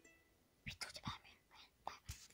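Faint whispering in a few short bursts, close to the microphone.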